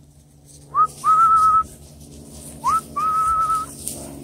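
A person whistling two calls, each a quick upward slide into a held, slightly wavering note lasting about half a second.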